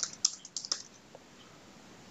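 Computer keyboard keystrokes, about half a dozen quick clicks in the first second, then the typing stops.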